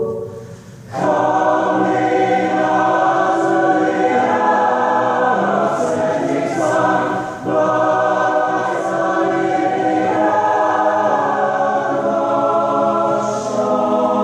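College choir singing a slow chorale in sustained chords, coming back in full about a second in after a brief dip, with a short break between phrases about seven and a half seconds in.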